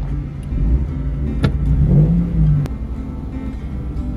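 Car engine running, heard from inside a car, with a rev that rises and then falls about two seconds in.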